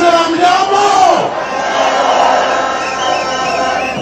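A man shouting a long drawn-out rally call through a public-address system, which falls away about a second in, and a large crowd shouting and cheering in reply.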